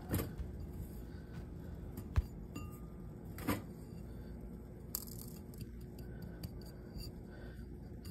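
Quiet background with a few faint clicks and taps from handling a digital pocket scale and its tray as gold flakes are tipped on, the clearest about two seconds in and again about three and a half seconds in.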